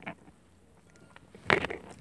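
Quiet eating sounds, a fork working a pancake on a plate and chewing, with a few faint clicks and one short sharp sound about one and a half seconds in.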